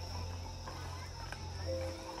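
Faint background ambience of crickets: a steady high chirr over a low steady drone, with a held musical note coming in near the end.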